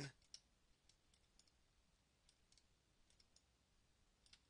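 Near silence, broken by a few faint, scattered clicks from a computer mouse and keyboard.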